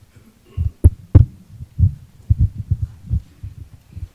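Microphone handling noise: irregular low thumps, with two sharp knocks about a second in, as a close microphone is carried and handled by someone walking away.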